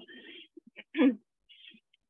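A person's voice: faint broken fragments and one short, loud vocal burst about a second in, cut up by the gating of video-call audio.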